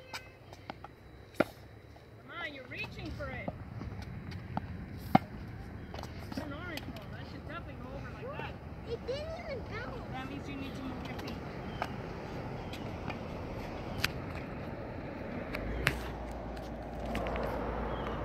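Tennis balls being hit with rackets and bouncing on a hard court, heard as a few sharp, widely spaced pops, the loudest about five seconds in. Faint children's voices carry in the background.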